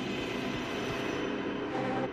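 Psytrance track intro: a steady rushing noise wash over low sustained synth chords, with pulsing synth chords coming back near the end.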